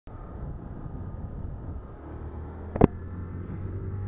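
Honda CG 150 motorcycle's single-cylinder engine running as a steady low rumble, with one sharp knock just before three seconds in.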